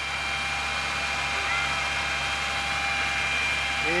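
A fire engine's water pump running steadily, a constant mechanical drone with a thin high whine over it.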